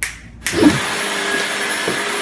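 Upright vacuum cleaner running with a steady whooshing hum and a thin high whine, starting abruptly about half a second in.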